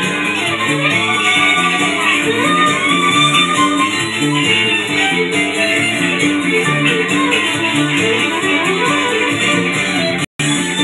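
Instrumental band break with guitar and a steady driving beat, a lead line sliding up and down over it, and no singing.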